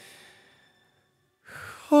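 The tail of a held sung note fades away to a moment of silence, then the male singer takes an audible breath in, and the next sung phrase begins at the very end.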